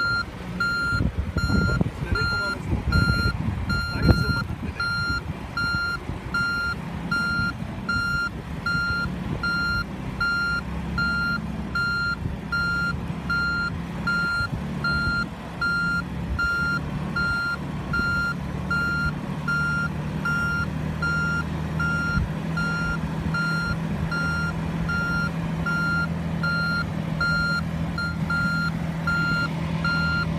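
An SUV's reverse-gear warning beeping steadily and evenly, over the engine running at low revs as the SUV, stuck in soft sand, is eased backwards in reverse with gentle throttle. There is a single knock about four seconds in, and the engine hum settles to a steadier note about halfway through.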